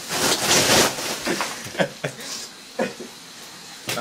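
Bag of ice being stomped on: the ice cubes crunch and crackle inside the plastic bag, loudest for about the first second. A few short, sharp crunches follow.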